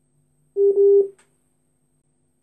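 A single electronic beep: one steady mid-pitched tone about half a second long, starting about half a second in.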